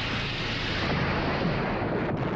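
A torpedo explosion: a loud, dense roar that sets in suddenly and holds for about two seconds, then ends.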